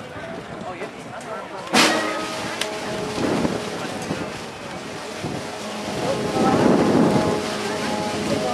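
Concert band playing sustained chords as the introduction to the national anthem, over crowd chatter. There is a sharp thump a little under two seconds in, and the band swells toward the end.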